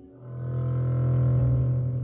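Double bass bowed on a low note that swells in just after the start and is held.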